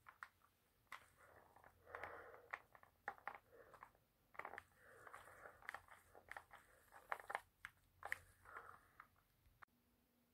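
Faint, irregular clicks and short rustles of handling noise close to the microphone, likely the rubber mask and phone being moved, with no voice.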